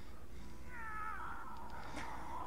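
A single drawn-out, high cry from the fails video's soundtrack. It starts about half a second in and dips in pitch partway through, with a steady low hum underneath.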